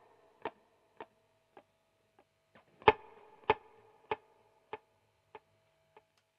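Short, percussive electric guitar hits repeated by a Boss DD-3 digital delay set to a slower repeat: echoes about every 0.6 s fade away, then a fresh, louder hit near the middle starts a new train of fading repeats, over a faint sustained tone.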